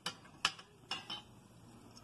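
A glass test tube clinking against a plastic test-tube rack as it is handled and lifted out: four light, sharp clinks in just over a second, then quiet background.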